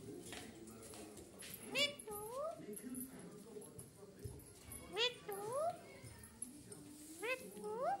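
Caged Alexandrine parakeet calling three times, each call a short sharp note followed by a rising whistled glide, spaced roughly every two and a half seconds.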